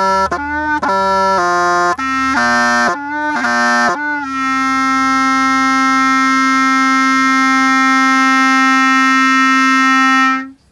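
Solo wind-instrument melody: a run of short notes, then one long held note, about six seconds, starting about four seconds in.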